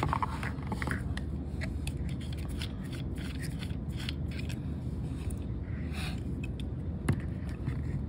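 Light scrapes and small clicks of a Gaahleri GHAC-68 trigger airbrush's metal parts being unscrewed and taken apart by hand, with a sharper click about seven seconds in, over a low steady hum.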